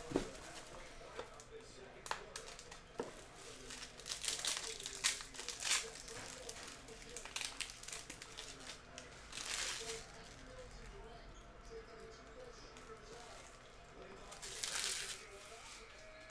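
Plastic shrink wrap crinkling and tearing as it is pulled off a sealed trading-card box, in scattered short rustles with a few light clicks.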